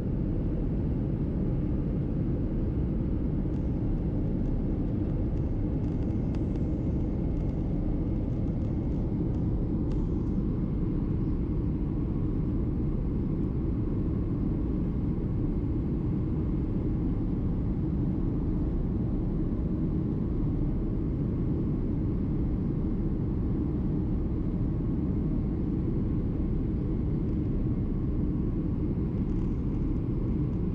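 Steady low rumble of a Boeing 767's turbofan engines and rushing airflow, heard inside the cabin beside the wing during the descent to land.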